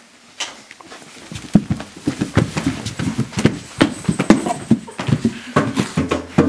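Hoofbeats of several horses, a rapid, irregular clatter of knocks that starts about a second in as a band of riders arrives.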